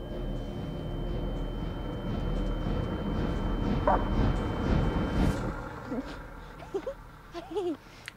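A dog whining in a few short rising-and-falling whimpers in the last two seconds or so, over a steady low background hum from the episode's soundtrack.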